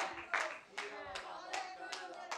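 Hand claps from the congregation at a steady pace, about two to three a second, with faint voices underneath.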